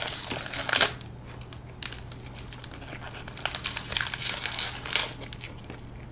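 Foil-lined plastic snack wrapper of a strawberry French Pie being crinkled and pulled open by hand: dense crinkling for the first second or so, then scattered softer crinkles.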